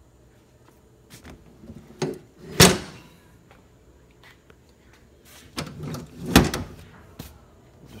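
Two loud knocks about four seconds apart, with lighter clicks and rustling between them: things being handled inside a vehicle cabin.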